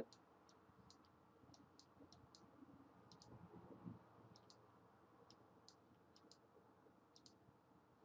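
Faint computer mouse clicks, irregularly spaced and some in quick pairs, over near-silent room tone.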